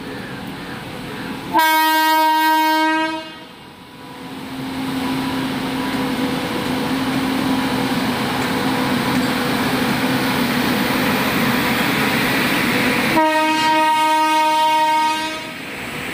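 Indian Railways WAG-9 electric freight locomotive sounding two long horn blasts, the first about a second and a half in and the second near the end. Between the blasts the steady rumble and wheel noise of the goods train rolling past fills in.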